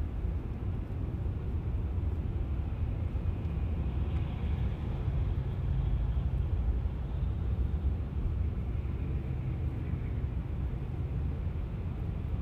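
Cabin noise of a Tesla electric car rolling slowly in stop-and-go traffic on autopilot: a steady low rumble of road and tyre noise and the surrounding traffic, with no engine sound.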